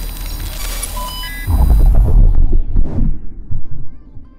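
Synthesized logo-intro sound effect: a hissing whoosh over a low rumble with a few short electronic beeps, then a loud deep bass hit about a second and a half in that rings and fades away near the end.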